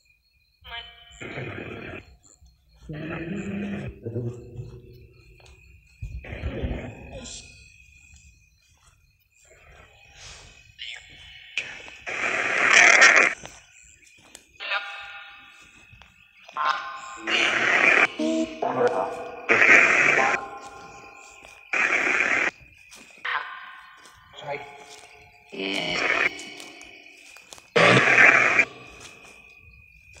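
Ghost-hunting spirit-box app playing through a small speaker. It gives out short, choppy bursts of garbled voice fragments and static at irregular intervals, louder and more frequent in the second half, over a thin steady high tone.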